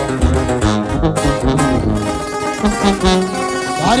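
Instrumental break in a Mexican corrido: acoustic guitars playing quick runs over a tuba bass line, with no singing.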